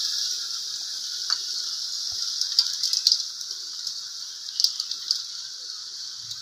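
Cassava pieces in balado chili paste sizzling in an aluminium wok: a steady high hiss that slowly fades, with a few faint light clicks.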